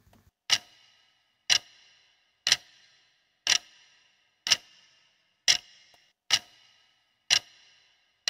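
Ticking-clock sound effect marking the seconds of a quiz answer countdown: one tick about every second, each with a short ringing tail.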